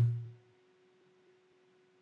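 Near silence: a man's drawn-out spoken word fades out in the first half second, leaving only a faint steady hum.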